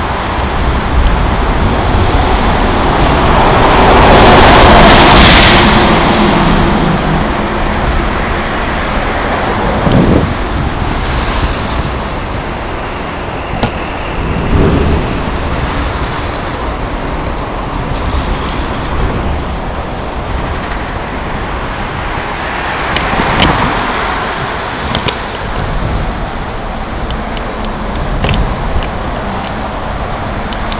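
Continuous road traffic noise from vehicles on the bridge roadway beside the walkway, with passing vehicles swelling loudest about five seconds in and again around twenty-three seconds.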